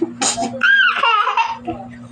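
People laughing: short breathy laughs at first, then a high-pitched squealing laugh that rises and falls in pitch from about half a second in, fading away near the end.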